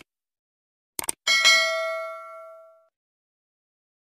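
Two quick clicks, then a single bright bell ding that rings out and fades over about a second and a half. This is the stock click-and-bell sound effect of a subscribe-button animation.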